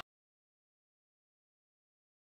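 Silence: the sound track has cut off completely.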